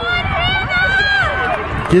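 Several high-pitched girls' and women's voices shouting and calling out over one another, the overlapping cries of spectators and players after a save.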